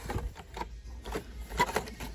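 Carded Hot Wheels cars in plastic blister packs being handled and pulled from a cardboard display box: a handful of light clicks and rustles of plastic and card.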